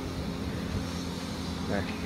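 Steady low mechanical hum with a few constant tones underneath, with a single spoken word near the end.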